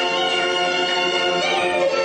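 A woman singing a Peking opera aria in the high, nasal jingju style, holding one long note that bends slightly near the end.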